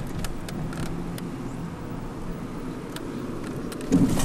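Steady road and engine noise heard from inside a moving car's cabin, with a few faint clicks and a short, louder bump just at the end.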